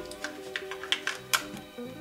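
Soft background music, with a few light clicks as 18650 lithium-ion cells are pressed into a headlamp's plastic battery holder.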